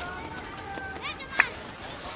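A film soundtrack played over an auditorium's loudspeakers and heard in the room: voices over a busy street-like background, with quick chirps and one short, sharp, high-pitched sound about one and a half seconds in, the loudest moment.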